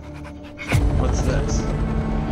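Film trailer soundtrack: a recording pen scratching in quick ticks across a drum recorder's paper over a low drone. About three-quarters of a second in, a sudden deep boom cuts in and opens into sustained music.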